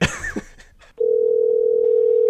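A short laugh, then about a second in a loud, steady, single-pitched telephone line tone as an outgoing phone call is placed.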